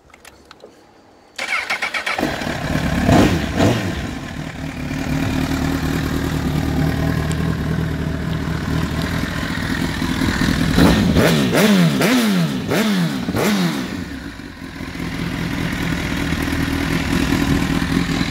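Honda CBR1000RR inline-four sportbike through an Arrow exhaust, cranked on the electric starter and catching after about half a second, with a couple of throttle blips right after it fires. It then idles steadily, gives a quick run of sharp revs that rise and fall a few seconds past the middle, and settles back to idle.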